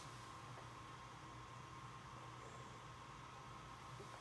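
Near silence: room tone, a faint steady hiss with a low hum and a thin constant high tone.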